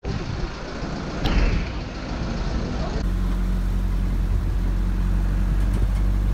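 Engine of an open-sided safari truck running, heard from on board. About halfway through, the sound changes to a steadier low engine hum.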